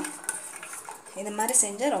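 Stainless-steel kitchen vessels and a mixer-grinder jar clinking and knocking as they are handled, a few light clicks in the first second. A woman starts talking about halfway through.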